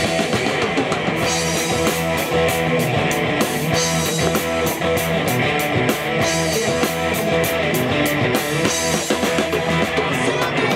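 Live hard-rock band playing an instrumental passage: electric guitars and bass over a drum kit, cymbals keeping a steady beat.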